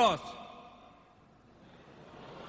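A man's voice at a microphone ending a spoken word right at the start, then near silence: quiet hall room tone with a faint hiss that slowly grows louder.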